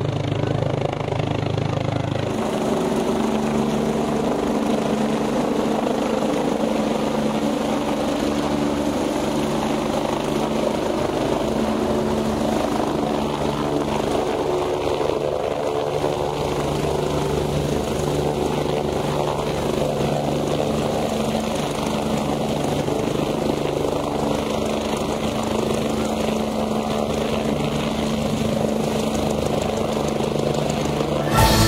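A BK 117 twin-turbine rescue helicopter running with its rotors turning as it sits on a grass field: a steady turbine whine over the regular beat of the main rotor.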